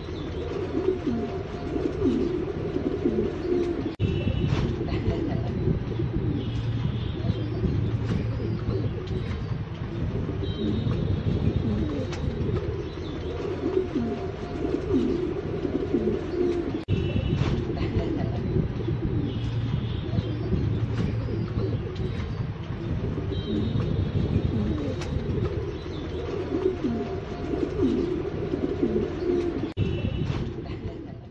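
A flock of fancy pigeons, fantails among them, cooing continuously with many coos overlapping. Short higher chirps recur every few seconds.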